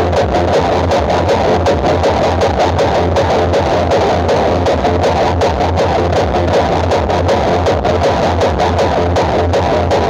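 Loud electronic dance music played through a large outdoor PA sound system of stacked power amplifiers, bass cabinets and horn speakers, with a heavy bass beat pulsing fast and evenly.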